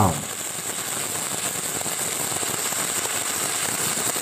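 Shielded metal arc (stick) welding arc crackling and sizzling steadily as a horizontal weld bead is run, with a constant high hiss.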